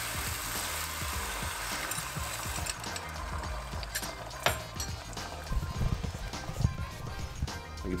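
Beaten egg poured into a hot frying pan of asparagus, sizzling steadily for the first two to three seconds and then dying down, followed by a few scattered clicks. Background music plays throughout.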